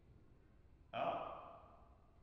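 A single breathy sigh from a person, starting suddenly about a second in and fading away over about a second, after near silence.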